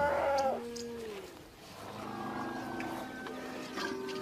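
A short animal call that bends and then falls in pitch in the first second, over a background music score of held notes.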